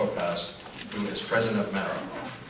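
A man's voice speaking indistinctly in short phrases in a reverberant room, between rounds of applause.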